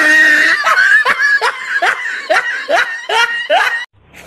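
A person laughing hard: a held high note, then a quick run of about eight short, rising 'ha's, cut off abruptly just before the end.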